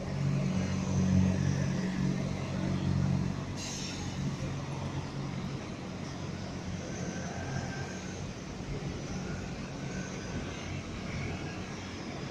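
A red London double-decker bus's engine running low and steady as it passes close by, loudest in the first few seconds. Then ongoing city traffic on a wet road, with a brief hiss about three and a half seconds in.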